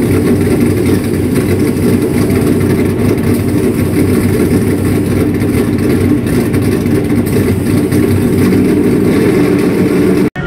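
Loud, steady running of a NASCAR Cup car's V8 engine, held at one even speed with no revving up or down.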